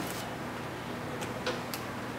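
A few faint, sharp clicks and taps from handling a nail polish bottle and its brush, over a steady low room hum.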